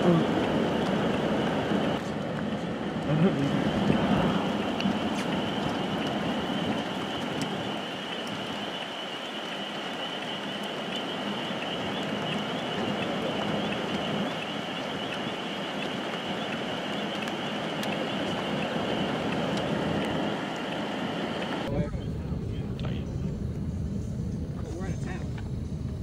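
Steady outdoor wind noise with a continuous high-pitched drone over it. About twenty seconds in, the sound cuts abruptly to a quieter, low rumble.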